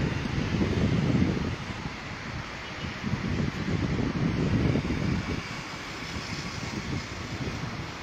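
Wind buffeting an outdoor microphone: an uneven low rumble that swells and fades in gusts, over a faint steady hiss.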